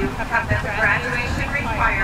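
Speech from the podium carried over a public address system across an open field, over a steady low rumble.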